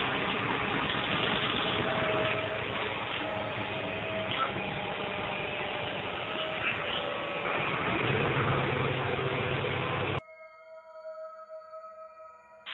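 Steady vehicle noise, as heard riding inside a moving vehicle and picked up by a phone microphone. It cuts off suddenly about ten seconds in, leaving faint sustained musical tones.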